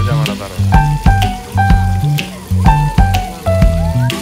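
Music with a steady beat, a stepping bass line and short held melody notes, over the hiss of splash-fountain jets spraying water.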